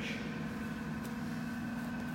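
A steady low hum with a thin, high steady tone above it: background room tone with no distinct events.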